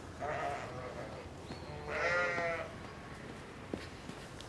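Sheep bleating twice: a short call near the start, then a longer, louder bleat about two seconds in.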